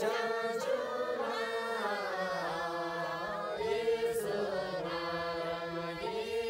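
A group of men and women singing together in long, held notes, a chant-like folk song.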